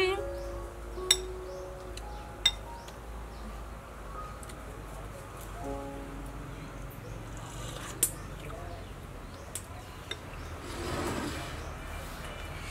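Soft background music with a metal spoon clinking sharply against a ceramic bowl several times, the loudest clinks about a second in, two and a half seconds in and eight seconds in.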